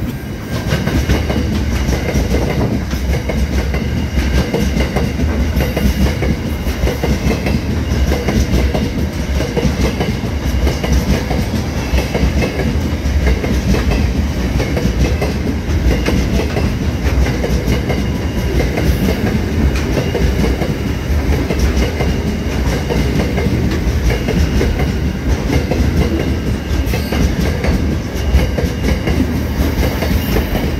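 Freight train of container wagons passing close by at speed: a loud, steady rumble of steel wheels on the rails that runs on without a break.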